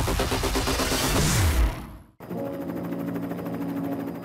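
Loud, noisy transition sound effect with a low tone sliding downward near its end. It cuts off sharply about two seconds in, and a music bed of steady held notes follows.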